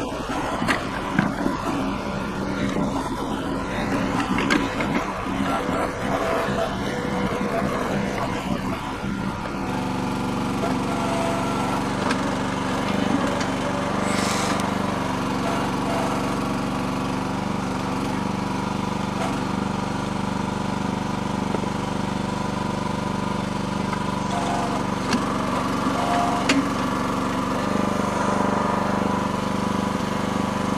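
Small engine of a Red Rock towable mini backhoe running under load while the hydraulics work the bucket, digging and lifting mud and rocks. The note is uneven for about the first ten seconds, then settles into a steady, even drone.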